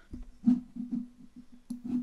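A guitar picked in a quick run of single notes at a few pitches, the strongest pluck about half a second in.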